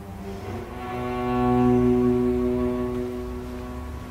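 Cello holding one long bowed note that enters softly, swells to its loudest about halfway through and then fades back, over a low sustained rumble.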